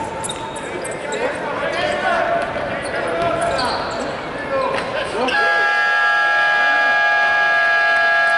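Basketball game sounds in a large arena: sneakers squeaking on the hardwood court, the ball bouncing, and voices. About five seconds in, the arena horn sounds one long steady tone that holds to the end.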